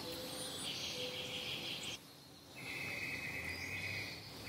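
Insects trilling in long, steady trills; one trill stops about two seconds in and, after a brief hush, a slightly lower-pitched trill starts.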